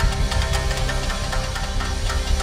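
Tsugaru shamisen duo playing live with drum kit, cello and synthesizer: sharp, quickly repeated plectrum strikes on the shamisen over heavy drums and held notes.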